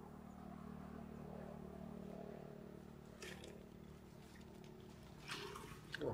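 Faint, steady low hum of an engine running in the distance, with a brief rustle about three seconds in.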